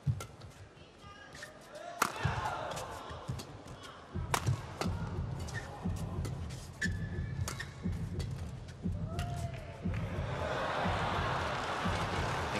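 Badminton rally: sharp cracks of rackets hitting the shuttlecock every second or two, with shoe squeaks on the court mat. Near the end the arena crowd cheers as the point ends.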